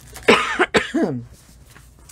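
A woman coughing: two short coughs about half a second apart in the first second.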